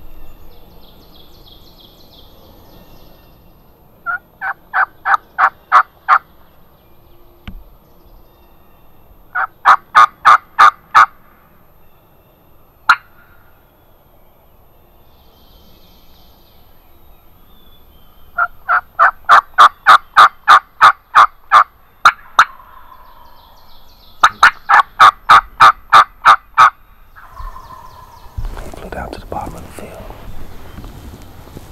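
Four loud runs of evenly spaced turkey yelps at about four notes a second. The first two runs are short and the later two run longer, to about a dozen notes each.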